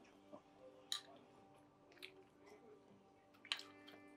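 Near silence with faint eating sounds: quiet chewing and a few soft clicks of a metal spoon against a small bowl. The sharpest click comes about a second in and another near the end.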